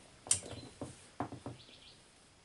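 A few light clicks and knocks of small metal carburetor parts being handled and set down on a paper-towel-covered bench.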